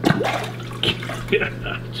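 Pet bass striking a live minnow at the water's surface in an aquarium: a sudden loud splash, followed by a few smaller splashes over the next second and a half.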